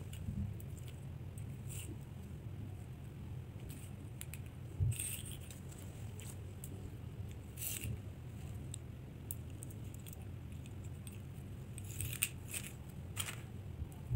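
Plastic beads clicking lightly against each other as they are handled and threaded onto a cord, a few scattered clicks and one soft knock over a low steady hum.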